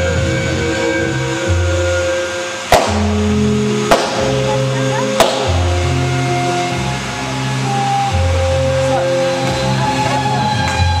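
Waltz music with long held notes, over which three sharp bangs go off about a second apart in the middle: firework reports during a fountain display.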